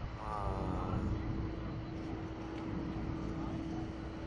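A steady low rumble with a constant mid-pitched hum running through it. A short voice, an "uh", comes in the first second.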